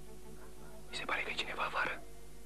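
Soft, sustained background music tones, then a person whispering from about a second in.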